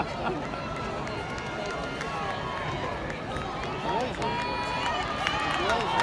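Spectators in a track stadium shouting and cheering during a relay race: many overlapping distant voices, with long held calls, growing a little louder near the end.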